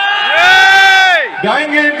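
One long drawn-out shouted call from a single voice, about a second long, rising then falling in pitch, with a hiss of crowd noise under it, followed by a few spoken words through the public-address system.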